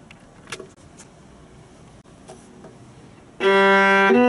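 A pause with a few faint clicks. About three and a half seconds in, a viola starts the next sight-reading exercise with a loud, held low bowed note.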